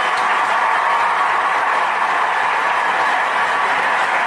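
Applause sound effect, a steady wash of clapping and crowd noise.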